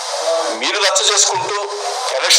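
Speech only: a voice starts talking about half a second in, over a steady hiss. The recording sounds thin, with no bass.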